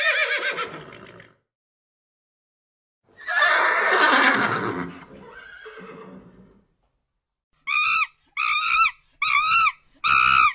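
A horse whinnying: the fading end of one whinny at the start, then a long whinny about three seconds in that trails off. Near the end, a run of four short, evenly spaced calls from another animal begins.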